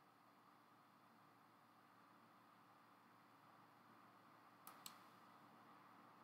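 Near silence: room tone, then two quick computer mouse clicks a fraction of a second apart near the end.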